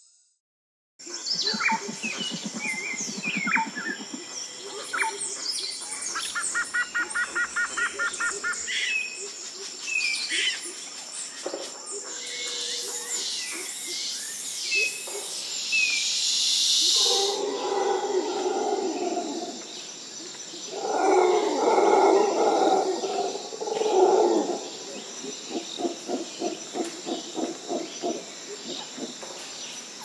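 Birds chirping and calling outdoors, with many short chirps, whistles and a rapid trill, over a steady high thin tone. In the second half, louder, lower animal calls come in clusters and pulse quickly near the end.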